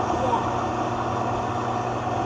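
Vitamix blender motor running steadily on a thick mix of cooked ground meat and vegetables, a constant hum with the base vibrating. No liquid has been added, and the mix is probably too dry to blend well without some.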